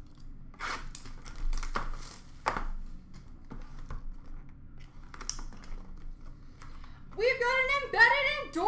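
Foil and plastic card-pack wrappers crinkling and rustling as a hand sorts through them, in short irregular crackles. Near the end a louder high voice comes in, its pitch sliding up and down.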